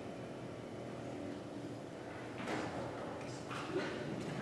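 Quiet room tone of a large hall with a seated audience, broken by two brief noises about two and a half and three and a half seconds in.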